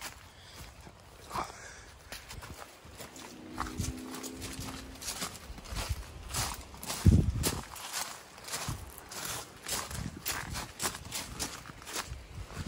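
Footsteps walking over leaf litter and twigs, about two steps a second, with the rustle of a handheld camera. A single heavy bump a little past halfway is the loudest sound.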